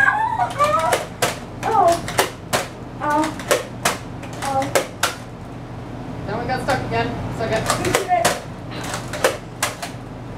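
A Nerf foam-dart blaster being cocked and fired over and over: a long run of sharp plastic clicks and snaps, at times several in a second.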